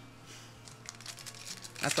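Wrapper of a Topps Big League Baseball trading card pack crinkling faintly as it is pulled open by hand.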